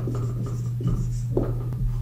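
Dry-erase marker writing on a whiteboard, short scratchy strokes as a word is written. A steady low hum runs underneath.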